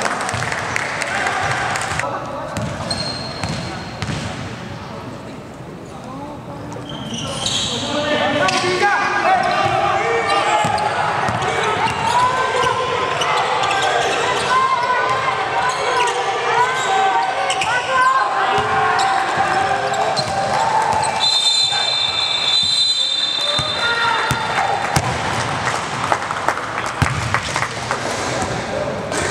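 Live sound of an indoor basketball game: many players' voices calling and shouting over one another, with the ball bouncing on the hardwood court. The noise is quieter for the first few seconds and busy from about a quarter of the way in. A long high tone sounds about three-quarters of the way through.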